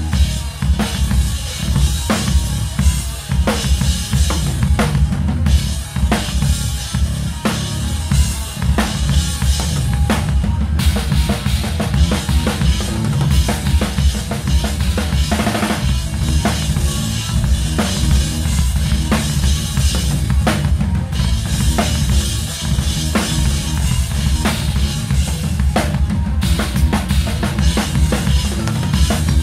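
Tama drum kit with Sabian cymbals played hard and fast: dense kick drum, snare hits and cymbal crashes in a continuous pattern, with the band's low end underneath.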